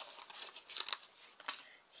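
Paper planner sticker being peeled from its sheet and handled, with a few short paper rustles and a light tap about one and a half seconds in.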